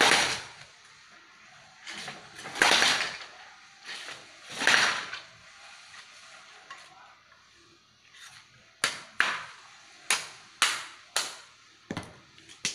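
A long bamboo pole scraped along concrete three times, each a short, loud scrape. Then, from about two-thirds of the way in, a series of sharp knocks, about two a second, as a blade or tool strikes a bamboo pole.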